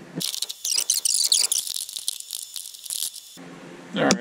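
A screw being driven by hand into the dashboard tweeter mount makes a rapid, high, scratchy clicking for about three seconds.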